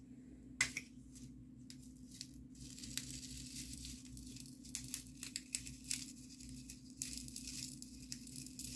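Scattered small clicks and crinkling from craft supplies being handled by hand, with a sharp click about half a second in, over a steady low hum.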